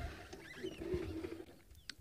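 Quiet bush ambience with a few faint, high bird chirps, and a faint low steady tone lasting under a second near the start.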